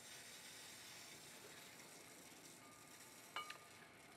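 Faint steady hiss of feed water running slowly into the reverse-osmosis unit's pre-filter housings as they fill. A small click comes about three and a half seconds in.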